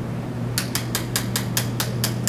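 A quick, even run of about seven light clicks, roughly five a second, starting about half a second in, over a steady low room hum.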